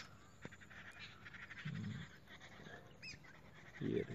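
Birds calling faintly: a few short high chirps that hook downward, one at the start and another about three seconds in, with a faint quick chatter between them. A short low murmur about two seconds in.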